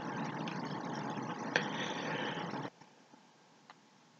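Steady background room noise (a faint hiss) with one light click about a second and a half in, cutting off suddenly to near silence about two-thirds of the way through.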